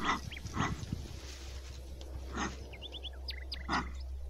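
A trapped gibnut (lowland paca) in a wire cage trap giving four short hoarse calls, unevenly spaced across the few seconds.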